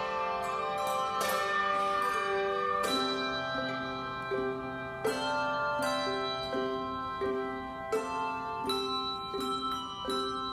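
Handbell choir playing: a full chord of many brass handbells ringing and sustaining, then from about three seconds in two lower bells struck with mallets alternate in a steady rhythm over a held low bell.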